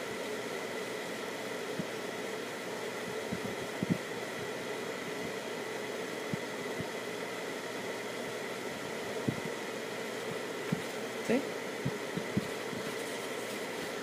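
Steady machine-like background hum with a faint high whine, broken by a few short, soft low thumps.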